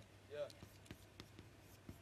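Chalk writing on a chalkboard: faint, quick ticks and scratches of the chalk against the board.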